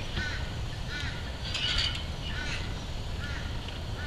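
A bird calling in a run of short, arched notes, about one a second, over a low steady background rumble.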